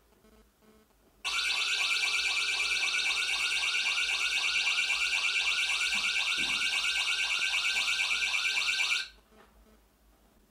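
Electronic siren alarm sound played by a web page through laptop speakers, set off by a motion-sensor alert: a fast repeating warble, about four or five cycles a second. It starts about a second in and cuts off suddenly near the end when the alarm is disabled.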